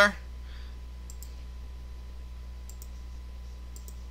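Computer mouse clicking three times, each click a faint pair of short ticks, over a steady low hum.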